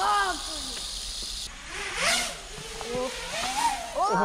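Small FPV racing quadcopter's motors spinning up and flying off, their whine rising and falling in pitch with the throttle. A steady high hiss cuts off suddenly about a second and a half in, and a rushing swell comes about two seconds in.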